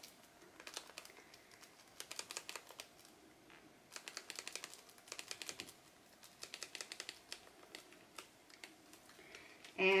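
Small bottle of green glitter being shaken over a canvas: quick rattling ticks in several short bursts as the glitter is sprinkled out.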